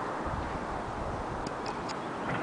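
Steady outdoor background hiss, with three faint, sharp ticks about a second and a half in.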